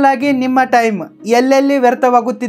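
Only speech: a man talking in Kannada.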